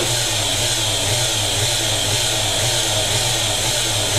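Homemade motor-generator rig running with a steady electric hum and an even whir above it.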